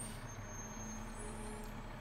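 Faint, steady low background hum with no distinct event.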